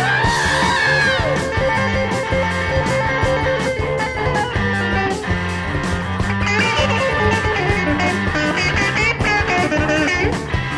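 Instrumental break of a 1970 heavy rock song: an electric lead guitar bends up into a long held high note, then plays short bent phrases from about two thirds of the way through, over a steady bass and drum beat.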